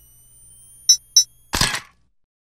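Sound-effect sting for an animated logo: two quick sharp clicks about a third of a second apart, then a louder crack that dies away near the end.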